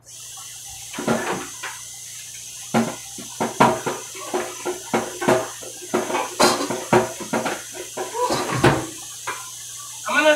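Dishes and utensils knocking and clattering many times at a kitchen counter, over a steady hiss that starts abruptly at the outset.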